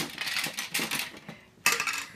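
Small plastic game pieces clattering and rattling against a plastic game board as they are pulled out and dropped. A sharp clack at the start, a run of uneven clicks, and another loud clatter near the end.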